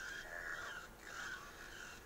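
Paintbrush scrubbing back and forth across the canvas, a scratchy rasp that rises and falls with the strokes.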